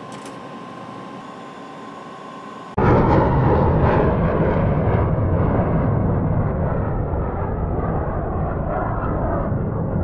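Quiet steady cockpit hum with a faint held tone, then, about three seconds in, a sudden switch to much louder jet airliner noise heard from inside the cabin on final approach low over the ground. This is a dense, steady rush of engine and airflow noise, heaviest in the low range.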